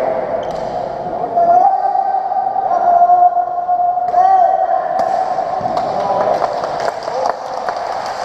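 Badminton doubles rally in an echoing sports hall: sharp racket hits on the shuttlecock and shoe noises on the wooden court, several in the second half, over a steady din of spectators' voices.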